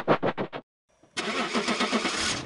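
Car engine-start sound effect: after a quick stuttering sound that cuts out and a short silence, the engine starts cranking over about a second in.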